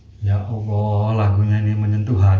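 A man's low voice drawn out at nearly one pitch for well over a second, more a held hum or long vowel than clear words.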